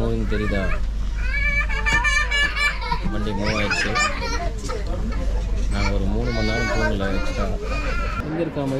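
Young children's high voices talking and calling out inside a moving train carriage, over the steady low rumble of the train running.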